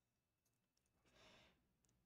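Near silence: room tone, with one faint, short exhaled breath about a second in.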